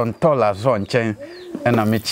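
A bird cooing once, a low call that rises and falls, a little past the middle, between stretches of a man's speech.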